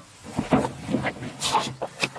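Handling noise: short rustles and light knocks of plastic and cardboard packaging being put down and picked up.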